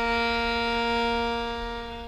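Violin holding the low tonic B-flat at the end of a descending B-flat harmonic minor scale: one long, steady bowed note that fades away near the end.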